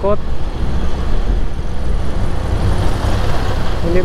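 Motorcycle running at riding speed, a steady, loud rush of engine and road noise with traffic around it.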